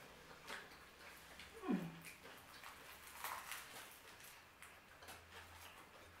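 Faint chewing and mouth noises of people eating burgers: soft, scattered wet clicks. A short falling vocal hum comes about two seconds in.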